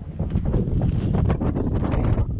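Wind blowing across the camera microphone: a loud, low, uneven rumble.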